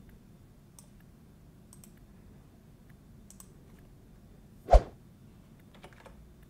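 Scattered faint clicks of a computer mouse and keyboard as code is copied and pasted, with one much louder sharp knock about three-quarters of the way through.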